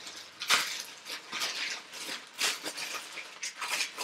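Thin plastic bag rustling and crinkling as it is handled, in a run of irregular crackles.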